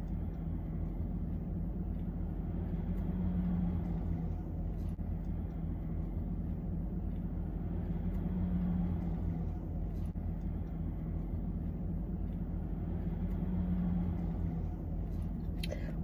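Steady low hum of a car idling, heard from inside the cabin. The hum swells slightly about every five seconds, with a few faint clicks over it.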